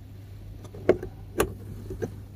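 Two sharp clicks about half a second apart, a little under a second in, with a fainter one at the end: light knocks from handling the fittings inside a car's cabin.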